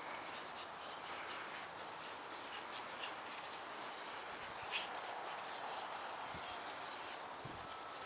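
Faint, steady outdoor background hiss with scattered light ticks and taps.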